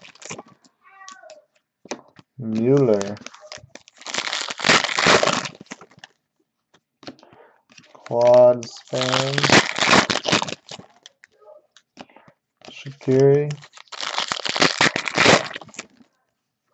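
Trading card packs and cards being handled: wrappers crinkling and cards rustling in bursts of about a second, three times, with brief low murmurs from a man in between.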